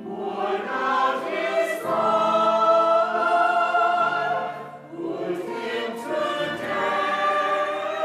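Mixed choir singing a slow, sustained choral piece: long held chords in phrases, with brief breaks between them.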